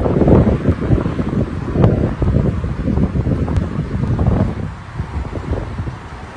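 Wind buffeting a phone's microphone in uneven gusts, loudest in the first two seconds and easing off toward the end.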